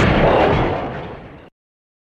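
Explosion: the tail of a loud blast fading away, cut off abruptly about one and a half seconds in.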